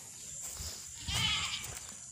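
A goat bleating once, about a second in: a short, high, quavering call.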